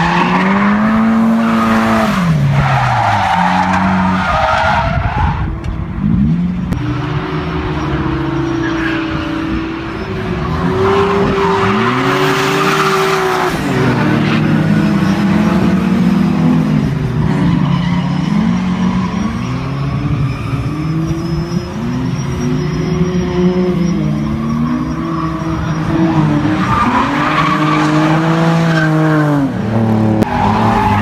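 Drift cars at full throttle sliding through a corner, their engines revving hard with the pitch swinging up and down again and again, over the steady hiss and squeal of spinning tyres.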